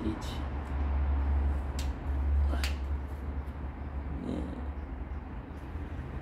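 A low, steady background rumble with a few sharp clicks about two seconds in, and a brief faint pitched call about four seconds in.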